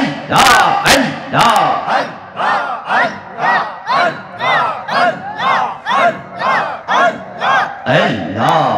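Rhythmic zikir chanting of 'Allah', amplified over a PA system, repeated about twice a second in a steady pulse, each call rising and falling in pitch. The first second or so has forceful breathy bursts on each beat.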